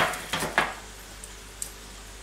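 A sharp clatter of a metal baking tray and utensils, followed by two lighter knocks. After that, a faint steady hiss of the deep-frying oil sizzling in the electric frypan.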